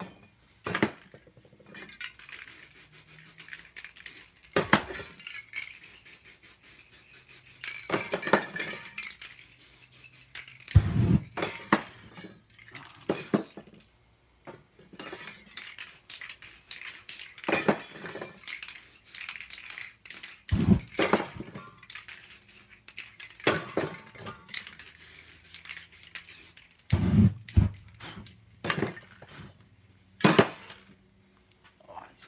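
Spray paint cans hissing in short bursts. Between them come sharp metallic clinks and knocks as the cans are picked up and set down on the work surface.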